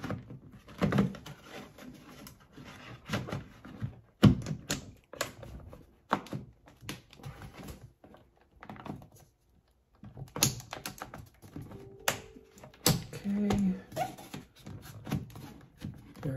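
Plastic clicks and knocks of an ADT Command touchscreen security panel being slid and pressed back onto its wall mounting plate, in irregular sharp taps with a quiet stretch in the middle.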